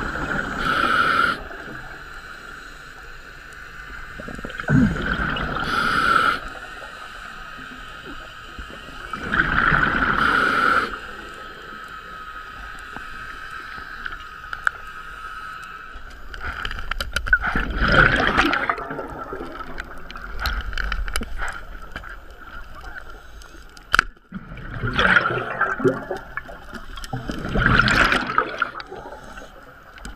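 Scuba diver breathing through a regulator underwater: hissing inhalations and gurgling bursts of exhaled bubbles, a breath every four to seven seconds.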